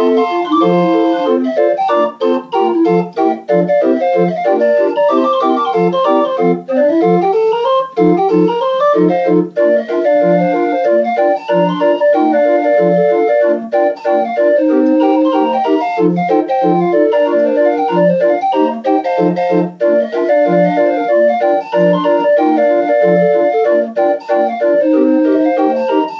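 Homemade street organ playing a tune: a melody over bass notes that fall roughly every beat, with quick rising runs of notes about a third of the way through.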